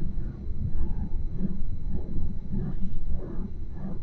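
Electric rack-railway carriage of the Gornergrat Bahn running, heard from inside: a steady low rumble with a soft, regular clatter about every half second.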